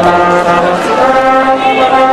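Banda brass band playing, the trombones in front holding long chords, which change about a second in.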